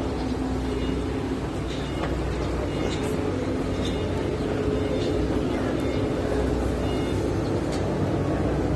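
Steady low outdoor rumble, like city traffic, with faint voices in the background.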